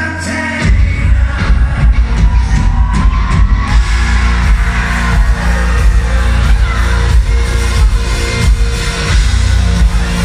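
Live band playing loud electro-rock, heard from the audience in the hall; heavy bass and drums come in about a second in and drive a dense, pounding beat.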